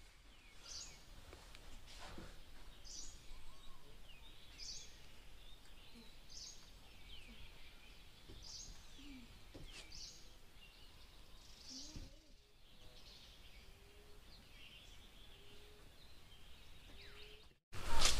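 Forest birds calling faintly: a short, high call repeated about once a second, with a few softer, lower calls among them.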